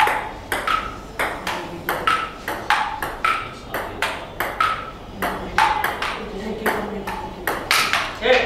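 Table tennis rally: the ball clicks back and forth between paddles and table, about two to three sharp hits a second, the bounces on the table ringing briefly.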